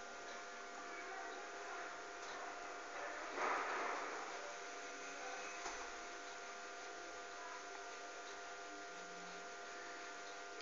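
Faint steady room hum with a few thin steady tones, and one brief soft rustle about three and a half seconds in.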